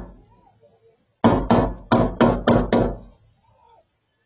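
Rifle gunfire heard from inside a parked car: six shots in quick succession, about three a second, starting about a second in.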